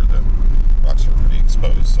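Steady low rumble of a vehicle's engine and road noise heard from inside the cab while driving, with a man's voice over it.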